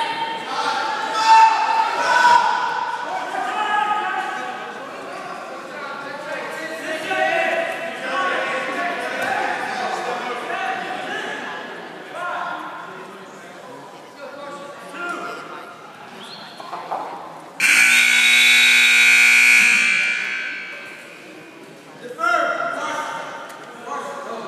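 Gymnasium scoreboard buzzer sounding one loud, steady tone for about two and a half seconds, marking the end of a wrestling period, with echo from the hall. Before it, indistinct spectator voices carry through the gym.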